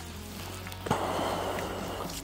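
Background music with a steady low note. About a second in, a short rustle of straps and fabric begins as a half-face respirator's head harness is pulled over a cap.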